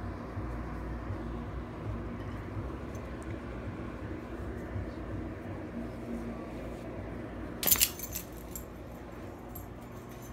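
A dog's metal collar tags jingle briefly about three-quarters of the way in. The rest is a low, steady rumble of handling noise as the dog is petted close to the microphone.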